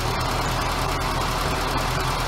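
Massey Ferguson 35 tractor's petrol/TVO four-cylinder engine idling steadily.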